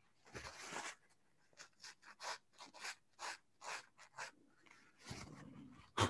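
Faint rubbing on pastel paper with a cloth: a short swipe, then a quick run of brief strokes at about three or four a second, and a longer wipe near the end.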